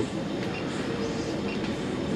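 Steady background noise of a busy indoor shop, with a faint held tone underneath.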